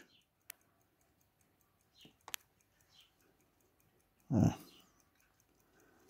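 Faint, quick and even ticking of a running mechanical pocket watch, a Cyma Tavannes with a 21-jewel movement, held in the hand. Two slightly sharper clicks come in the first few seconds.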